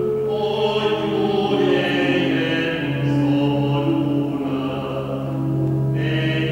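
Voices singing a slow church hymn in long held notes, over a steady low sustained tone.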